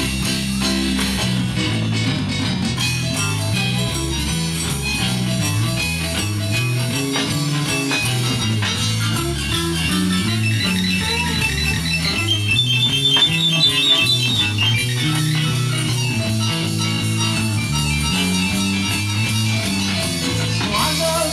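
Live rock-and-roll band playing an instrumental break of a rockabilly number: electric and acoustic guitars, bass guitar, drum kit and keyboard, over a walking bass line. A run of quick high repeated notes comes in about halfway through and is the loudest part.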